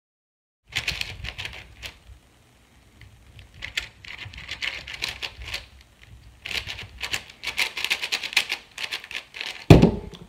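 Magnetic 4x4 speedcube being turned fast during a solve: rapid bursts of plastic clicking and clacking, with a lull about two seconds in and a denser run in the second half. The solve ends with a single loud thump just before the end.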